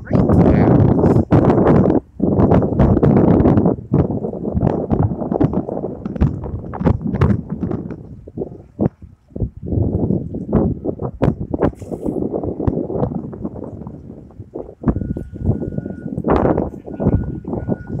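Wind buffeting a phone microphone: loud, irregular rumbling gusts with many short knocks. A faint steady high tone sounds in the last few seconds.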